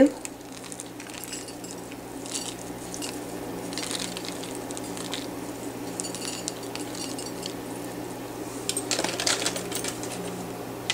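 Crisp sev being sprinkled by hand onto a plated pakora: faint scattered light ticks and rustles, with a louder cluster of clicks about nine seconds in, over a steady low hum.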